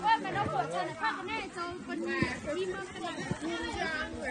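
Overlapping chatter from several people talking at once.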